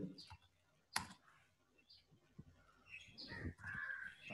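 Near silence on a video-call line, broken by a single sharp click about a second in and faint scattered sounds near the end.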